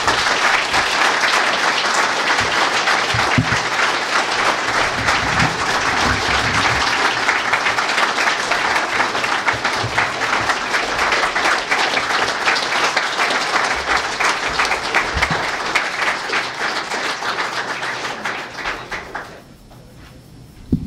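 Audience applauding, dense and steady, tapering off and stopping shortly before the end.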